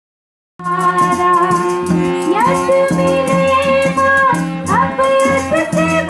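Live folk music starts about half a second in: a dholak drum beat with sharp, rapid strokes under steady sustained melody notes.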